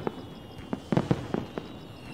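Aerial fireworks bursting: a scatter of sharp bangs, with a quick cluster of several about a second in.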